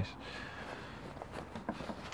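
Faint rustle of combat-trouser fabric as a hanging trouser leg is grabbed and lifted, over a low background hiss.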